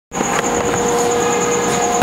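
A steady mechanical drone: an even rushing noise carrying two low steady tones and a thin high whine.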